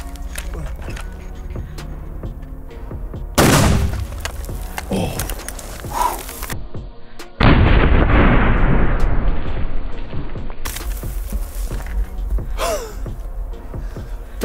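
Background music, with a sharp loud crack about three and a half seconds in. About seven seconds in comes a slowed-down shot from a Steyr HS .50 M1 .50-calibre bolt-action rifle: a deep boom lasting about three seconds.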